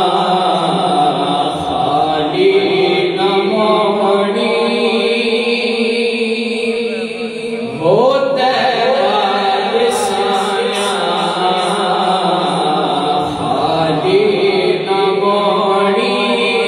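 A man's solo voice reciting a Punjabi naat unaccompanied, in long held, ornamented notes, with a rising slide about eight seconds in.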